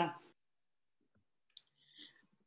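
A pause between speakers on a video call: the end of a spoken word, then dead silence broken by one short, sharp click about one and a half seconds in, followed by a faint voice sound near the end.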